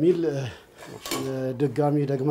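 A metal serving utensil clinking against a plate as pasta is served, with one sharp clink about a second in.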